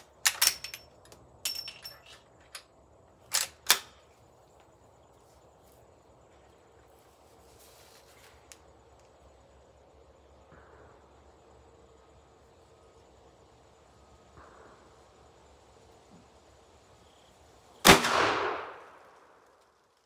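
A few sharp metallic clicks as a lever-action rifle is handled and readied. Then, near the end, a single .44 Magnum shot from a Rossi R92 lever-action carbine with a 20-inch barrel. The shot is very loud and rings out for about a second and a half.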